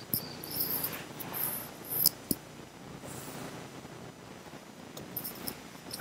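Faint clicks of a computer mouse over low hiss: once just after the start, twice about two seconds in, and a few more near the end.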